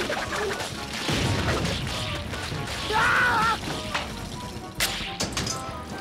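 Cartoon crash sound effects as a structure collapses: a dense clatter of smashing and thudding, with a short wavering squeal about three seconds in and a sharp crack near five seconds.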